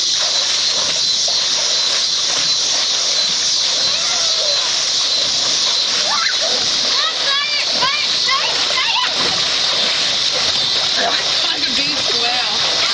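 Water splashing and sloshing in a swimming pool as a boy swims face-down and kicks, with a steady rush of water noise. High children's voices call out between about six and nine seconds in.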